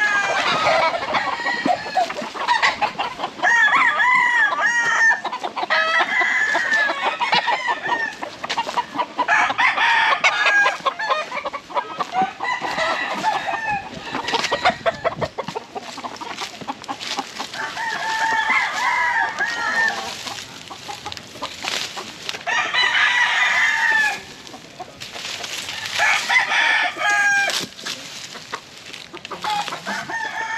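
Several roosters crowing one after another, about eight crows in all, each lasting a second or two.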